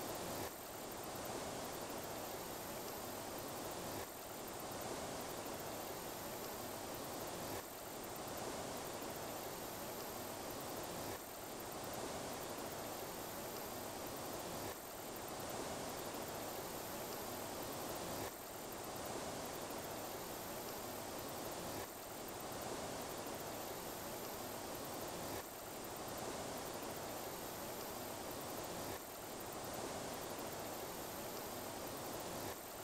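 Steady rushing noise that repeats as a loop, with a brief dip at each join about every three and a half seconds.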